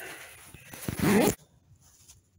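Coleman sleeping bag zipper pulled in one quick run of under a second about halfway through, rising in pitch. The zipper now runs freely, its teeth lubricated with olive oil.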